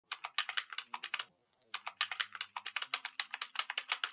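Computer keyboard typing sound effect: a quick run of keystroke clicks, a brief pause, then a longer run, about ten clicks a second.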